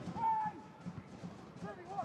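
On-pitch sound of a football match in open play: two short shouts from players, one just after the start and one near the end, over faint low thuds of boots and ball.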